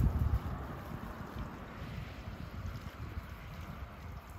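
Wind buffeting the microphone: an uneven low rumble, strongest in the first half second, then steadier.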